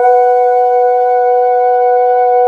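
Karaoke backing track opening on a single sustained synthesizer tone, entering suddenly and held perfectly steady, with no beat or melody yet.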